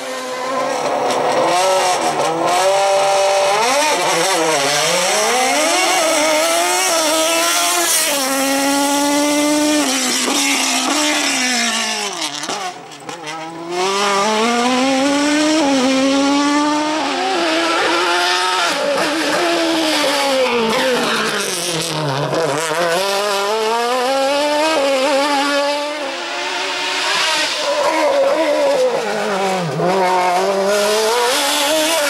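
Sports-prototype race car engine revving hard, its pitch climbing and dropping over and over as the car accelerates and slows through a cone slalom. The sound dips briefly about halfway through.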